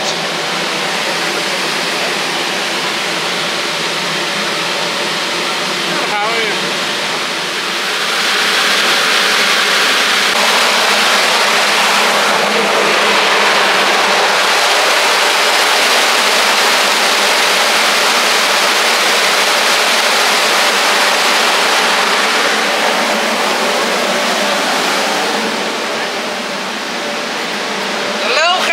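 A large fan unit of an air-cleaning system running, a steady rush of air that grows louder about eight seconds in and eases a little near the end.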